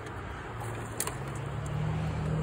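Low, steady hum of a motor vehicle engine that grows stronger about halfway through, with a single sharp click just before.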